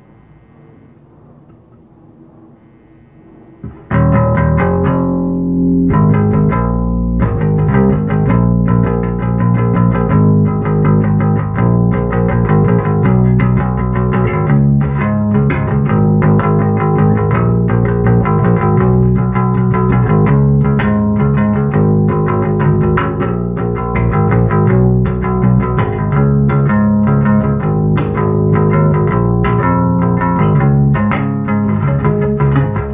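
Ibanez Black Eagle electric bass played through a bass amplifier: a faint steady hum for the first few seconds, then a loud, continuous rhythmic bass line starting about four seconds in.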